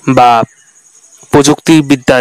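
A voice speaking two short phrases. Behind them runs a faint, steady, high-pitched pulsing chirr like crickets.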